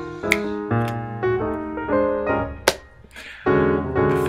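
Background piano music playing a run of notes, briefly thinning out near the end before picking up again. A sharp click stands out about a third of a second in, and a louder one about two-thirds through.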